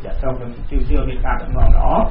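Speech only: a man talking in Khmer in a radio news broadcast, with a louder stressed stretch near the end.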